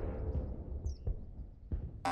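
Cartoon sound effects: a low rumble dying away, with a brief high chirp about halfway and two soft thumps in the second half.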